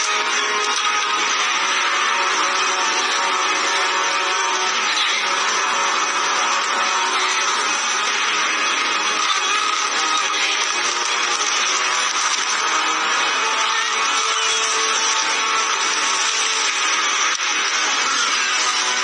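Background music, with a steady rushing noise laid over it.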